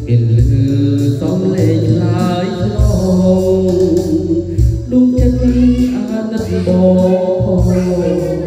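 A man singing a Khmer song through a handheld microphone over a backing track with sustained bass notes.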